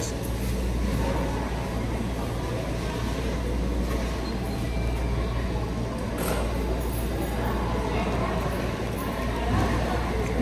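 Steady indoor room noise: a low hum with a hiss over it, and a faint click about six seconds in.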